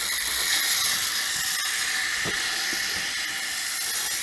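Battery-powered toy gyroscope flywheel of the Tightrope-Walking Gyrobot whirring as it spins down after being switched off, a steady high whir slowly fading. A few faint knocks from handling the toy.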